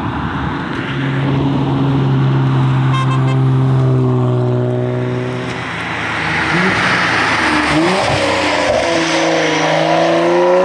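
Toyota GR Supra's turbocharged 3.0-litre inline-six engine driven hard on a rally stage: a steady, held engine note for several seconds, then the pitch dips and swoops a few times around gear changes before climbing again under acceleration near the end.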